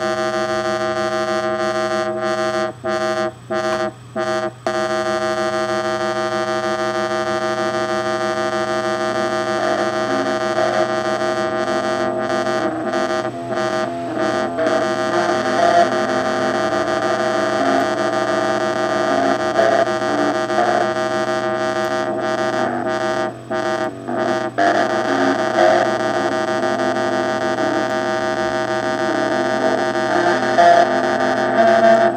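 Software synthesizer drone built in Pure Data (two oscillators with LFO-swept filters), played through a Danelectro Honeytone mini guitar amp. It is a thick, buzzy, steady drone of many held tones that cuts out briefly a few times, and a stepping pattern of changing notes joins it about ten seconds in.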